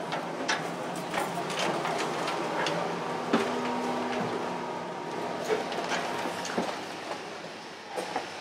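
Footsteps and scattered knocks and clicks while walking from a ship's deck into its interior, over a steady rumbling background.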